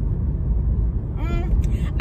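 Steady low road and engine rumble inside a moving car's cabin, with a woman's voice coming in a little over a second in.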